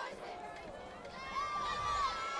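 Distant voices shouting in a football stadium, with one long drawn-out yell starting about a second in.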